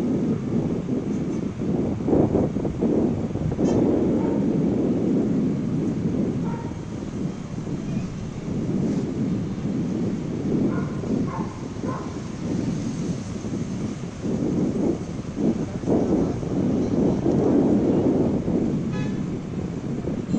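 Outdoor ambience picked up by a live rooftop camera: a continuous low rumble that swells and fades, with no distinct impacts.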